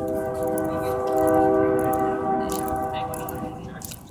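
BNSF freight locomotive air horn sounding one long blast, a chord of several steady tones, starting suddenly and fading out near the end. It is the horn signal for the train nearing a road crossing.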